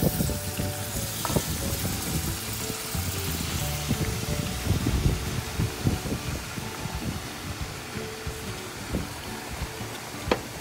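Chicken broth and browning sauce poured into a hot pan over fried pork chops, sizzling as it hits the pan. The sizzle is strongest in the first few seconds and then eases to a lighter crackle. Music plays faintly underneath.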